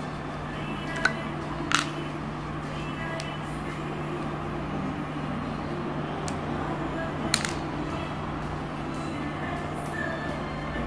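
A few sharp clicks of plastic syringe parts being handled and fitted together, about a second in, just before two seconds and again after seven seconds, over a steady low hum.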